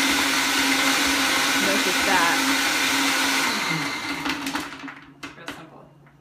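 Countertop blender running at full speed, chopping ice in a protein shake, with a loud steady motor hum. About three and a half seconds in it is switched off, and the motor winds down with falling pitch to a stop, followed by a few light clicks.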